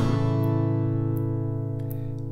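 Steel-string acoustic guitar, capoed at the second fret, strummed once on an open G chord shape and left to ring out, slowly fading.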